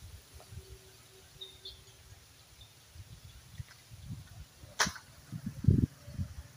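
Oil palm pruning with an egrek, a long-pole sickle: mostly quiet, then a single sharp crack about five seconds in, followed by a run of low thuds near the end.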